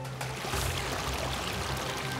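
Running water from a small waterfall splashing into a pond, starting suddenly a moment in, over background music with held tones.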